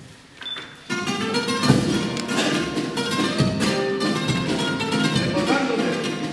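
Spanish guitars strike up a strummed introduction about a second in, after a near-quiet pause, with deep drum beats falling every second or two.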